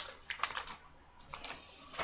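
A few light clicks and rustles of a printed card and paper being handled, the sharpest right at the start, about half a second in, and around a second and a half in.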